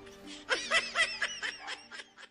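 Laughter: a quick run of short, high-pitched giggles, about four a second, starting about half a second in, over background music with held notes.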